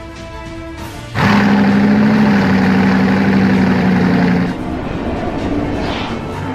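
Background music, then about a second in a sudden loud roar with a steady low drone cuts in over it. It holds for about three seconds, then drops away back to the music.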